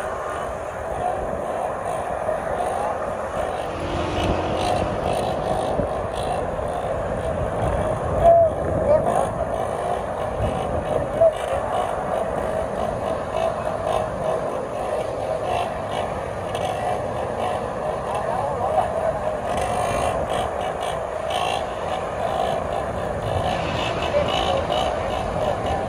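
Small motorcycle engines running at speed, their pitch wavering up and down as a rider holds a wheelie among other motorcycles on the road.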